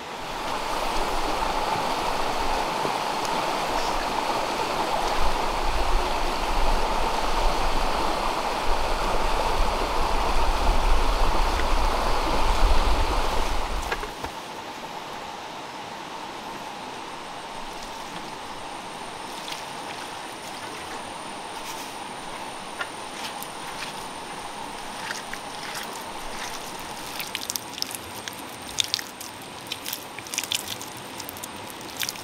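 A loud steady rushing noise for about the first fourteen seconds, which then stops suddenly. After it, hands dig into and crumble loose earth with many small crunches and clicks, turning to wet mud squelching near the end, over a thin steady high whine.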